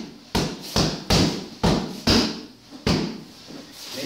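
Bare fists punching a freestanding Century punching bag set on a 110-pound weighted base. There are about six solid hits in quick succession over roughly three seconds, each a sharp thud with a short decay as the bag rocks back.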